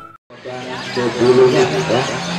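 Intro music cuts off right at the start. After a brief silence, the hubbub of an outdoor crowd of men talking comes in and carries on.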